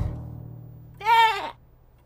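A cartoon lamb's single short bleat, voiced by a performer, about a second in, rising then falling in pitch. It comes just after a low musical note fades out.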